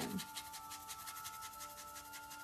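A paintbrush scrubbing in rapid, faint strokes, working wet paint into a painted wooden surface. Quiet background music holds a few steady notes underneath.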